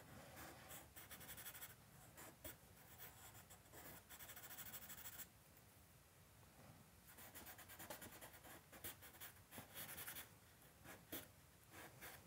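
Compressed charcoal stick scratching across drawing paper in runs of quick, short shading strokes. The sound is faint, with a pause of about two seconds midway.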